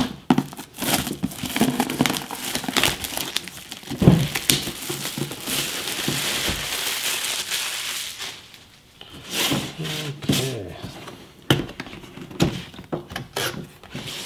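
Plastic shrink wrap being torn and peeled off a cardboard box and crumpled in the hands, an irregular crinkling and crackling. There is a short lull about two-thirds of the way in, followed by more crackles and light knocks as the box lid is handled.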